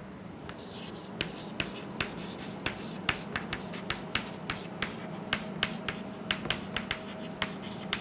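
Chalk writing on a chalkboard: a quick, irregular run of sharp taps and short scratches as the letters are written.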